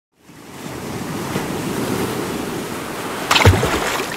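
Logo intro sound effect: a rushing, surf-like noise fades in and holds steady, then a sudden whoosh and a deep hit come about three and a half seconds in.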